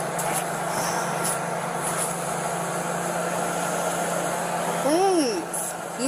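Steady engine noise of a vehicle running close by, with a low hum that fades shortly before the end. A brief vocal sound comes about five seconds in.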